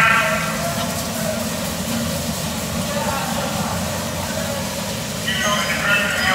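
Bumper cars running on the ride floor: a steady low rumble of the cars' electric drives and wheels. Riders' voices come back in near the end.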